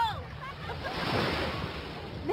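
Shallow sea water lapping and sloshing around people wading, an even rushing noise with no distinct splashes.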